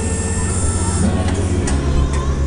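On-ride sound of a KMG X-Drive fairground ride in motion: a loud, steady, low throbbing hum from the ride that drops in pitch about three-quarters of the way through, with rushing air noise over it.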